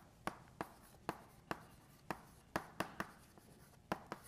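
Chalk writing on a blackboard: a run of about ten sharp, irregular taps and short scratches as words are written.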